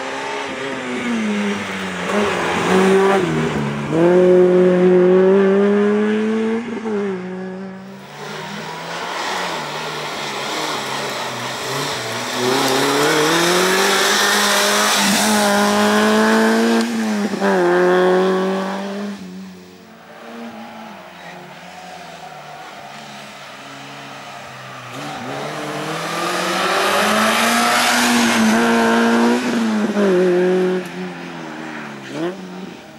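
Peugeot 106 slalom car's four-cylinder engine revving hard, its pitch climbing through the gears with brief breaks at each shift and dropping as the driver lifts for the chicanes. It fades to a quieter stretch about two-thirds of the way through, then revs up loudly again near the end.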